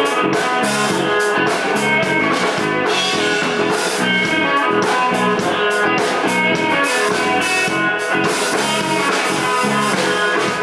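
Live rock band playing an instrumental passage without vocals: electric bass and guitar over a drum kit, with a steady cymbal beat.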